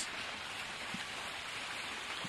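A steady, even hiss of running water with a few faint ticks in it.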